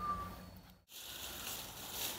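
Faint outdoor background noise with no distinct event, broken by a brief total dropout a little under a second in, after which a slightly different faint hiss continues.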